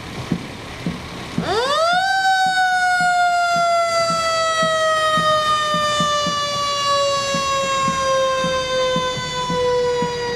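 Fire engine siren winding up quickly about a second and a half in, then sounding one long tone that slowly sinks in pitch as it winds down.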